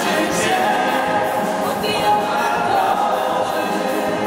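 A man and a woman singing into microphones together with a children's choir.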